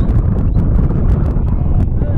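Wind buffeting the camera microphone: a loud, steady low rumble with scattered faint clicks.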